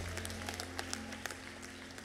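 Soft, sustained low music from the band under the preaching, with scattered clapping and light applause from the congregation.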